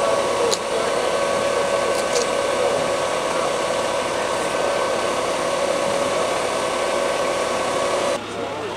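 A machine running steadily: an even hissing rush with a few held whining tones over it.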